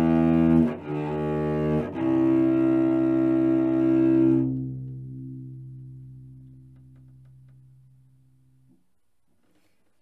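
A cello bowing the last notes of a C major scale: two short notes, then a long held final note that keeps ringing after the bow leaves the string and dies away over about four seconds.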